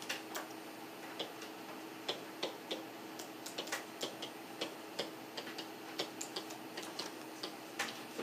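A pen-style stylus tapping and clicking against the writing surface as short dashes and arrows are drawn: light, sharp clicks at uneven spacing, about two or three a second, over a faint steady hum.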